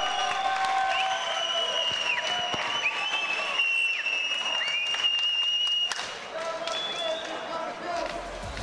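Fight crowd applauding and cheering, with long shrill whistles held over the noise; it eases off a little about six seconds in.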